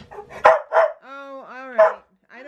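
A dog barking at a door to be let out: sharp barks about half a second in and again near the end, with drawn-out voiced sounds in between.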